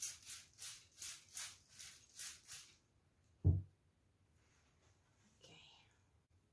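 Trigger spray bottle squirting water onto a paper towel to dampen it: about eight quick hissing squirts, roughly three a second, stopping before the middle.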